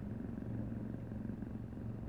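Steady low hum of a running car heard from inside its cabin.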